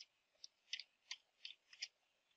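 Faint computer keyboard typing: about six separate key clicks, unevenly spaced.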